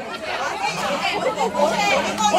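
Voices talking, with several people chattering at once.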